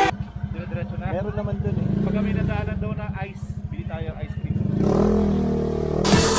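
Motorcycle engine idling with a fast, even pulse under a few spoken words, then revving up as the bike pulls away near the end.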